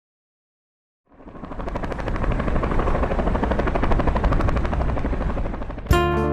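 Helicopter rotor noise, a fast steady pulsing that fades in about a second in and holds, cut off near the end by guitar music.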